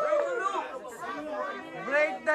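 Several people's voices overlapping, talking and calling out.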